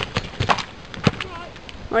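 Hoofbeats of a horse cantering through a jumping grid on a loose arena surface: a few irregular thuds of strides and landings as it comes past close by.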